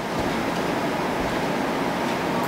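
Steady, even hiss of background noise in a pause between spoken lines, with no other sound standing out.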